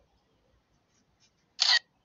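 A single brief phone camera shutter sound about one and a half seconds in, as a photo of the ID card is taken; otherwise near silence.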